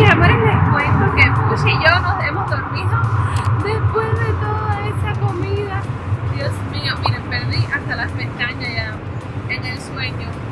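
Steady cabin drone of a Cessna Citation business jet in flight, a constant low hum with a hiss above it, under a woman's talking.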